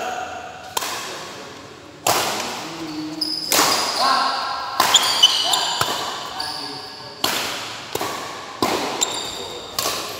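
Badminton rally: rackets strike the shuttlecock in a string of sharp smacks, roughly one every second or so, each ringing on in the hall. Short high squeaks of shoes on the court come between the hits.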